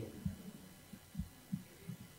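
Faint room tone with four soft, low thumps, the last three about a third of a second apart.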